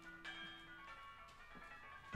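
Quiet passage of contemporary percussion music: soft, bell-like metallic notes ring and fade, with a fresh struck note about a quarter second in and a few light taps after it.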